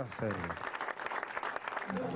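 Audience applauding, a steady clatter of many hands, with a man's voice trailing off over it at the start.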